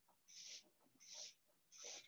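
Marker pen drawing on a paper flip chart: three short, faint scratchy strokes about two-thirds of a second apart as the rungs of a ladder are drawn.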